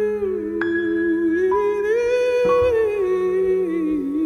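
A high male voice hums a slow, wordless melody that glides up and down, over held grand piano chords, with new chords struck about half a second, one and a half and two and a half seconds in.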